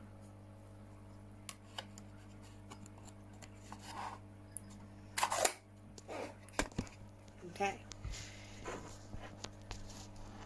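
Handling noises of plastic containers and lids and of the phone camera being moved on a table: a scatter of short clicks and knocks, the loudest about five seconds in, over a steady low hum.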